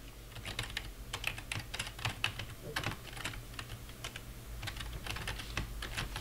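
Typing on a computer keyboard: a run of irregular, quick keystrokes starting about half a second in, over a faint steady low hum.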